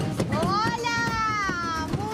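A woman's long, drawn-out, high-pitched vocal call lasting about a second and a half, rising in pitch and then slowly falling.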